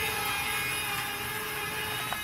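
The electric track drive of a homemade radio-controlled Johnny 5 robot, running with a steady whine as its resin tread links roll across a hardwood floor.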